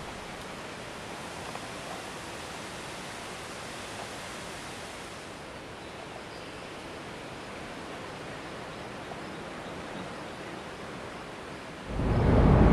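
Steady wind, an even rustling hiss with no distinct events; the upper hiss thins about halfway through.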